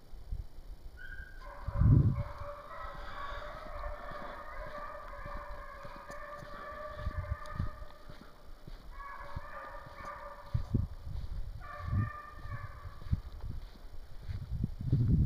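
Walker hounds baying on a deer's trail, several voices overlapping. A long bout of baying starts about a second and a half in, followed by two shorter bouts near the end. A few low thumps come through, the loudest about two seconds in.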